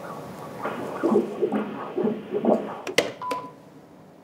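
Cardiac ultrasound machine playing Doppler heart audio: rhythmic pulsing with each heartbeat for about two seconds. Then a few sharp clicks from the control panel and a short beep.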